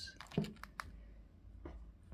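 A few faint, short clicks as a button on a Baofeng handheld radio's keypad is pressed to start its stopwatch, scattered through the first second and a half.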